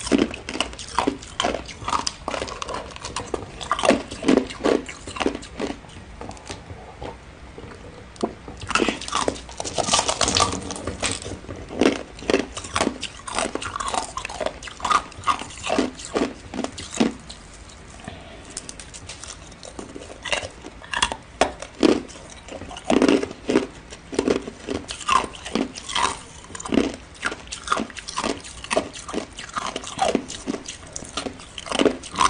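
Biting and chewing solid ice: repeated sharp cracks and crunches as pieces snap off a clear ice block and are chewed, coming in irregular clusters with a couple of short quieter pauses.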